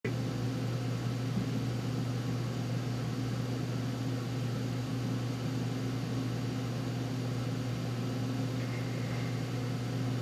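Steady low machine hum with a hiss inside a human-centrifuge gondola while it is still at rest at 1 G, before the arm starts turning.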